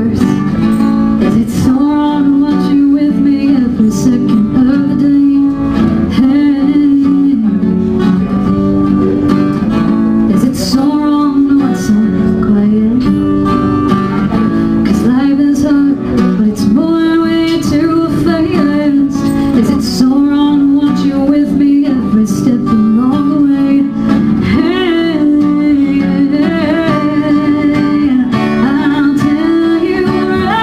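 A woman singing a slow song over a strummed acoustic guitar, in a solo live performance.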